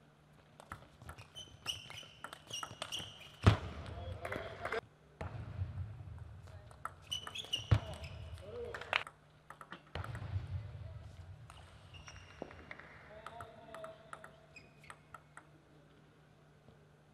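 Table tennis rallies: the plastic ball clicking sharply off the paddles and table in quick runs of strikes. After each of the first two rallies comes a player's loud shout.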